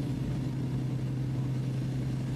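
Construction machinery engine running steadily on the bridge deck, a low, even drone with a constant hum and no distinct strokes.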